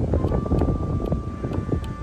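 Wind buffeting the microphone, a gusty rumble, with a faint steady held tone starting just after the beginning.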